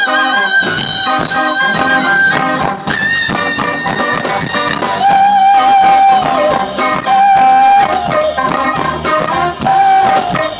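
Live funk band playing, with a brass horn over electric guitars, bass and drums, and long held lead notes that change pitch every couple of seconds.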